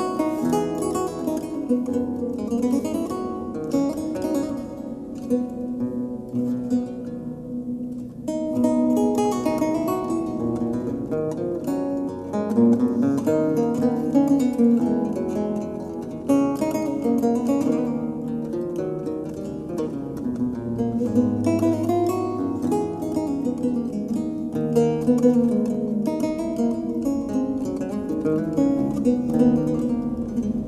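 Instrumental music led by plucked acoustic guitar, with no voice. It thins briefly about eight seconds in, then comes back fuller.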